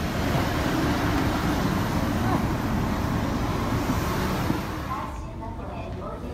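Airport apron bus driving, its engine and road noise heard from inside the passenger cabin. About five seconds in it cuts off to a quieter hall with people talking.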